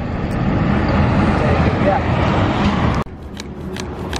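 Steady road traffic noise with faint voices in it. It drops away suddenly about three seconds in, leaving a quieter background with a few small clicks.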